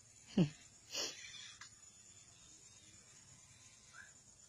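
A short falling vocal sound about half a second in, sliding quickly from high to low, then a brief breathy burst about a second in, like a gasp or a sniff.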